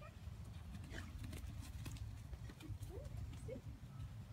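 Footsteps and a vizsla puppy's paws moving on grass, a scatter of light scuffs and taps over a steady low rumble, with two brief rising squeaks about three seconds in.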